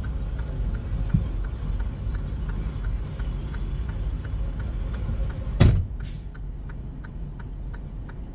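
Semi-truck cab with the engine idling, a steady low rumble, and a light ticking about twice a second. A loud sharp knock comes about five and a half seconds in.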